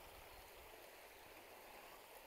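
Near silence: only the faint, steady rush of the river.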